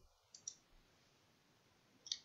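Near silence with two faint, short computer clicks about half a second in, from typing or clicking at the computer.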